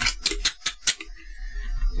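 A quick run of light, sharp clicks and taps, about eight to ten in the first second, from multimeter test probes being handled against a small relay's pins, then quiet handling.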